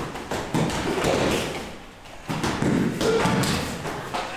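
Punches and kicks landing on handheld padded focus mitts, a run of repeated thuds with a short lull about two seconds in.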